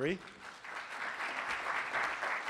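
Audience applauding, swelling up over about half a second and then holding steady.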